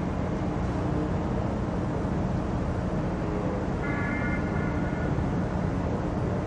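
Steady low rumbling outdoor background noise. About four seconds in, a brief faint high tone sounds over it.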